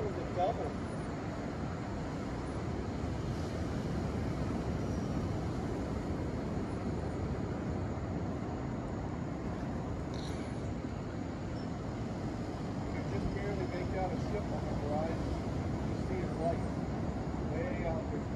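Steady wash of ocean surf, with a short "oh" from a person at the start and faint voices in the background near the end.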